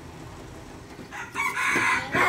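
A rooster crowing loudly, one long held call starting a little over a second in.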